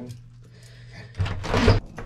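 A door being opened: quiet at first, then about a second in a scraping rush that ends in a loud, low thump.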